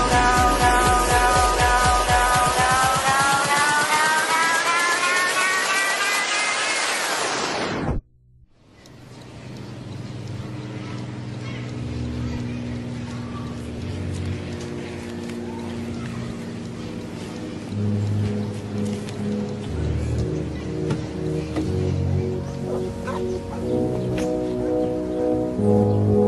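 Background music: a song whose sustained tones rise in pitch and fade, cutting off about eight seconds in, followed by a new instrumental piece that fades in with low sustained notes and grows louder.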